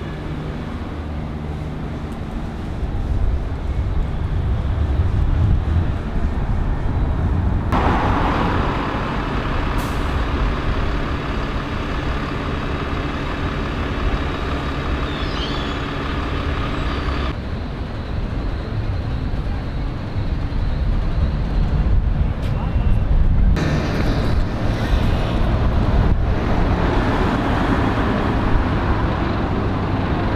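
Diesel buses running in city street traffic, with a steady low engine rumble throughout. The sound changes abruptly three times, at about 8, 17 and 23 seconds.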